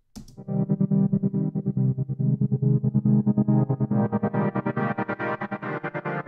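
Synth pad chord chopped into rapid, evenly spaced pulses by a trance gate effect made with volume automation; the level dips between pulses rather than cutting to silence. The sound brightens about four seconds in.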